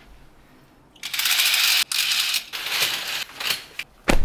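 Hotel room curtains drawn open along their track, the runners rattling and the fabric swishing in a few pulls that start about a second in and stop just before the end.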